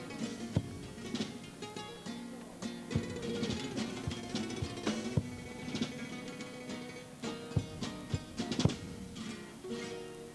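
Cádiz carnival comparsa's instrumental passage: Spanish guitars playing with frequent drum strokes, sustained notes running under them.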